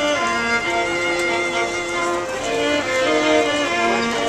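A string trio of two violins and a viola playing together live, bowing held notes in several parts that step from one note to the next.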